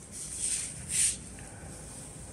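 Rustling of flowers and leaves in a table-runner arrangement as they are handled and adjusted: two short rustles, about half a second and a second in.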